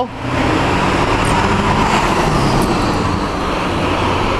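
Steady road traffic noise from passing motor vehicles.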